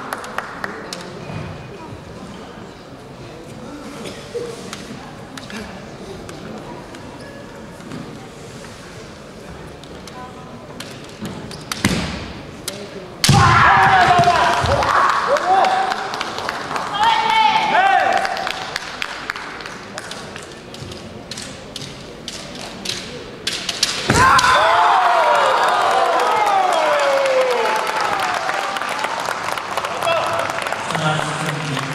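Kendo fencers shouting kiai, long drawn-out yells that slide in pitch, with sharp stamps of bare feet on a wooden gym floor and clacks of bamboo shinai. The first dozen seconds are quiet apart from scattered taps; sharp strikes come about twelve seconds in, followed by loud shouting. A second burst of yells starts about 24 seconds in and falls in pitch.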